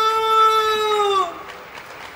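A sumo official's long, drawn-out sung call: one man's voice holding a single note, then sliding down and fading out after about a second and a quarter.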